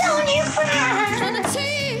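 Music: a woman's voice singing a wavering line with wide vibrato over steady, held low instrumental notes.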